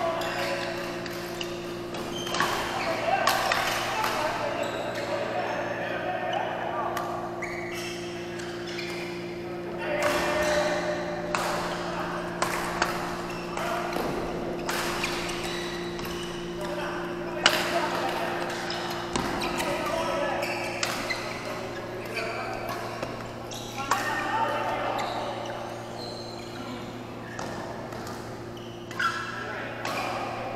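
Badminton rallies echoing in a large sports hall: a run of sharp racket strikes on the shuttlecock, with background voices and a steady low hum.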